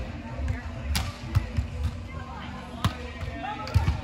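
A beach volleyball being played in a rally: sharp slaps of hands and forearms on the ball, the two loudest hits about a second in and just before three seconds, with lighter contacts between. Players' voices call faintly over it.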